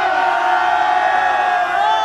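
A group of people shouting together in one long, held cheer, many voices at once; near the end a second drawn-out shout begins and slowly falls in pitch.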